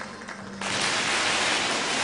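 Audience clapping, coming in about half a second in as a dense, even clatter of many hands.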